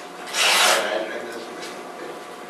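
A single brief rasping rustle, about half a second long, a little under a second in.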